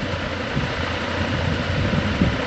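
Steady low hum with an even hiss, unbroken and without rises or falls.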